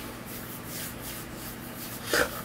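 Soft rustling and rubbing from hand movement, with a faint steady low hum underneath.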